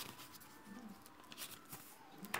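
Faint rustling and a few light ticks of paper pages being turned by hand, close to silence.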